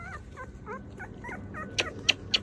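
Young puppies whimpering in a run of short high squeaks, about four a second, with a sharp click near the end.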